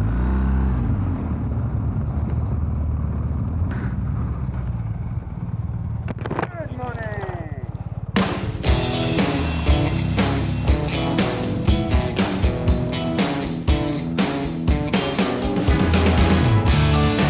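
BMW R1250GS boxer-twin engine running under way with wind noise, a steady low rumble. About halfway through it cuts abruptly to rock music with a strong, regular beat.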